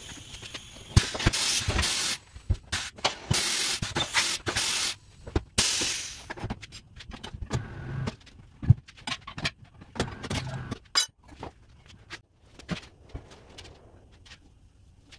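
Compressed air hissing from a pneumatic tire changer in three bursts over the first six seconds, then scattered metal clanks and knocks as the tire is worked on the machine.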